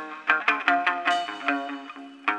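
Chầu văn ritual music without singing: a plucked string instrument picks a quick run of notes, several a second, each ringing briefly and fading before the next.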